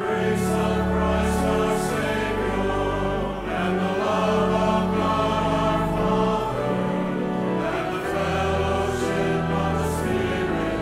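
Church choir singing a hymn, with a pipe organ holding long, steady low notes underneath.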